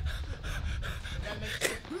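A man breathing hard in quick, noisy gasps over a low rumble, with one sharper, louder gasp near the end.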